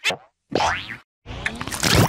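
Heavily effects-processed audio: a pitch-warped sound glides up and back down in pitch about half a second in, then a louder, harsh distorted stretch runs near the end.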